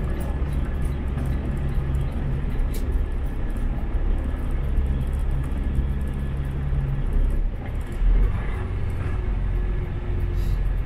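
Semi-truck's diesel engine and road noise heard from inside the cab: a steady low drone while driving on the freeway. The engine note shifts about seven seconds in, with a short thump a second later.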